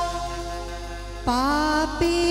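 Live Gujarati garba folk music: a sustained held note for about a second, then a woman's voice comes in sharply, sliding up into a new sung phrase held with vibrato.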